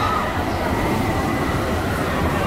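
A steady low rumble with no distinct strokes or rhythm.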